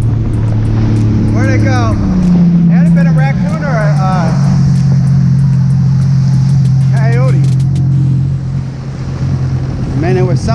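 A Sea-Doo 300 jet ski's supercharged three-cylinder engine, fitted with a free-flow exhaust, running steadily under way on the water. Its pitch rises briefly about two seconds in and then settles back.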